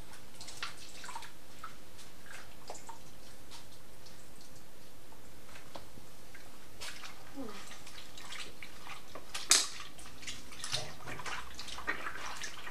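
Indigo dye liquid dripping and trickling from a length of silk lifted out of a compost indigo vat, then water sloshing as the cloth is worked by hand in a bowl. A single sharp knock comes about nine and a half seconds in.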